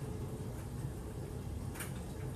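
Quiet steady background rumble of room tone, with a faint short hiss near the end. The drops of lubricant falling into the bearing make no sound that stands out.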